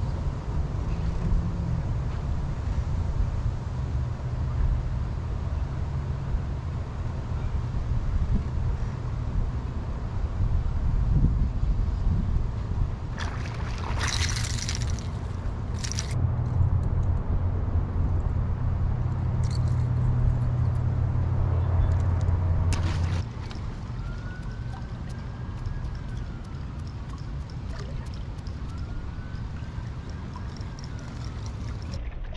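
A steady low rumble, with short bursts of splashing from a hooked bass thrashing at the surface around the middle. The rumble drops away about three-quarters of the way through.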